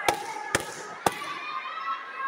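Three sharp slaps about half a second apart: taekwondo kicks striking padded body protectors during sparring.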